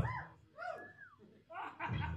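Electric guitar through an amplifier: a ringing chord dies away, a few quiet bending, gliding tones follow, and picked single notes start again near the end.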